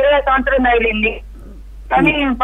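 Only speech: a caller talking over a telephone line, the voice thin and cut off above the middle range, for about a second, then a short pause before the talking resumes.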